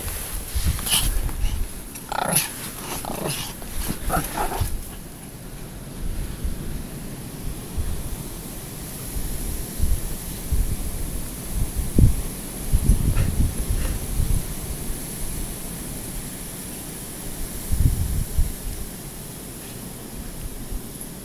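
Pomeranians making several short, high-pitched whines in the first few seconds. After that come low thumps and rustling.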